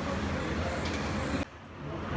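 Steady low-pitched hum and room noise in a restaurant dining room, breaking off abruptly about one and a half seconds in.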